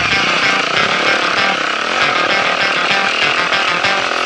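Dirt bike engine revving up and down as it climbs, a buzzy rasp picked up by the helmet camera's microphone.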